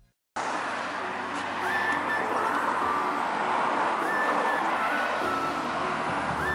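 Road traffic on a street: a steady rush of passing-car noise that begins abruptly about half a second in.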